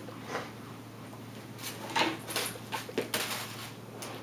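Plastic wrapping and packing rustling and crinkling in short bursts as hands rummage through a box of doll clothes, over a steady low electrical hum.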